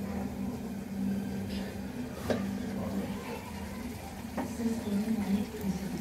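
Low steady hum and faint hiss of a covered pot of goat meat cooking slowly over a gas burner, with two faint clicks, about two and four seconds in.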